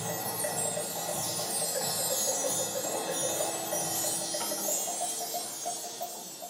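Children's school ensemble playing music on percussion and pitched instruments, with a quick run of repeated bell-like notes. The music gets quieter about four and a half seconds in.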